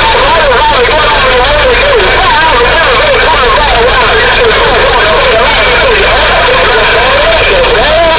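CB radio receiving a distant station: a garbled, warbling voice over steady static and a low hum.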